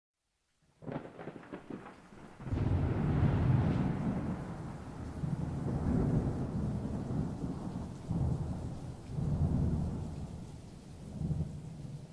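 Thunderstorm sound effect: a crackling thunderclap just under a second in, then rolling thunder rumbling over rain, swelling and fading several times.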